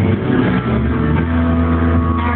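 Live band playing an instrumental passage with guitars, bass and drums, with sustained low notes.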